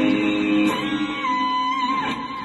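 Fender Stratocaster electric guitar played through a tube amp and a BOSS Waza Tube Amp Expander, with the speaker cabinet bypassed. A held low note rings until about a third of the way in, then a sustained high note is held with wide vibrato.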